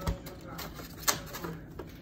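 Two light knocks, about a second apart, amid soft handling noise at a stainless steel mixing bowl.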